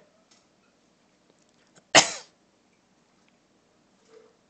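One loud, short explosive exhalation by a person about halfway through, sharp at the start and fading quickly.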